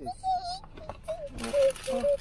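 Cardboard fried-chicken box being torn open by hand: its tape seal is peeled off, and paper and cardboard rustle and crinkle from about a second and a half in. Short hummed voice sounds run over it.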